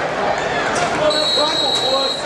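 Spectators talking over the general noise of an indoor arena, with a referee's whistle sounding one steady high note from about a second in until the end.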